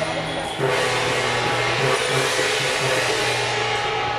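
Loud steady rushing noise with music underneath, held notes changing a few times.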